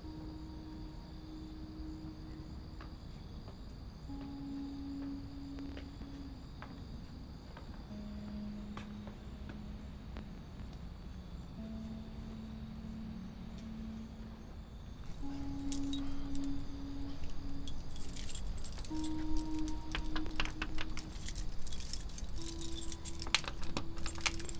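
A large bunch of keys jangling and clinking from about two-thirds of the way in, as someone fumbles through them at a door lock. Under it, a slow music score of long held notes, one after another.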